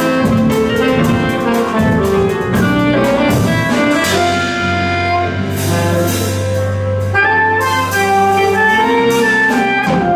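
Live jazz: violin and alto saxophone playing melody lines over a drum kit with steady cymbal strokes and a low bass note.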